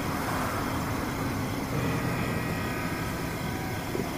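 A steady low rumbling drone with a faint hum, unchanging throughout.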